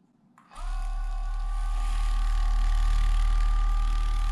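Hyperice Vyper 2.0 vibrating foam roller switched on at its lowest setting: a click about half a second in, then its motor starts and runs with a steady, very low buzzing hum and a fainter steady tone above it. Level one is, by the owner's belief, 36 vibrations a second.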